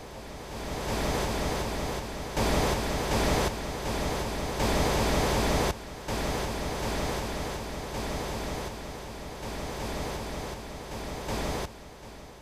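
A steady rushing noise like breaking surf, spread evenly from deep to high, that jumps louder and drops back in sudden steps twice near the middle and falls away just before the end.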